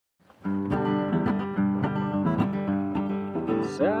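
Acoustic guitar strummed in a steady rhythm, about three strokes a second, starting half a second in. A man's voice starts singing near the end.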